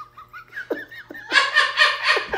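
A man laughing at his own joke. It starts as a faint, high, wavering giggle and breaks into louder laughter about halfway through.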